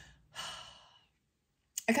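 A person sighs: one breathy exhale, under a second long, fading away, followed by a short silence. Speech starts again near the end.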